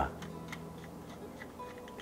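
A wooden pepper mill being turned, cracking black peppercorns with faint, irregular ticks.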